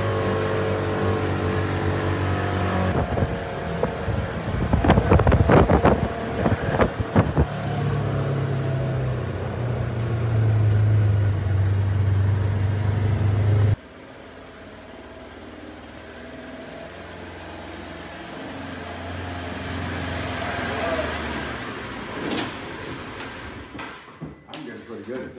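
Side-by-side UTV engine running under way, with a burst of knocks and rattles about five to seven seconds in. Past the middle the sound drops suddenly to a quieter engine hum that slowly builds again.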